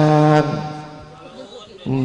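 A man's voice holding one long, steady chanted note that stops about half a second in, followed by a quieter lull until his voice returns briefly near the end.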